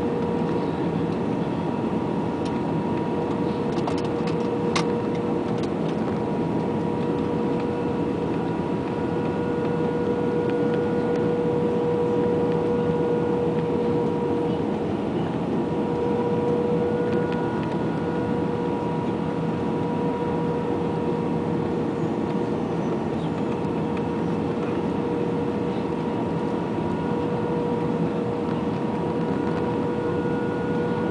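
Cabin noise of an Airbus A320 descending on approach with flaps extended: a steady rush of airflow and jet-engine noise with a steady tone running through it, swelling slightly for a few seconds in the middle. A couple of light clicks sound about four to five seconds in.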